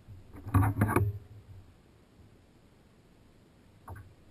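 A brief flurry of knocks and rattles on the plastic kayak, lasting about half a second, with a single faint click near the end, while a caught fish is handled aboard.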